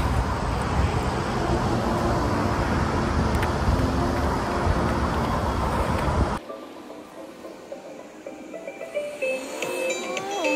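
Roadside traffic noise over faint background music. About six seconds in the traffic cuts off suddenly, leaving the music on its own.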